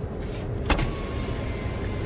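A car's power window motor: a click of the switch a little under a second in, then a thin, steady whine for about a second, over the steady low rumble inside the car.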